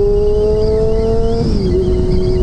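Honda CBR600F4i's inline-four engine running under way, its note climbing slowly and then dropping about one and a half seconds in, with a low rush of wind noise on the microphone.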